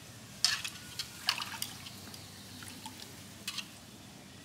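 Water splashing and dripping in a metal pot as hands work in it, in a few short separate splashes.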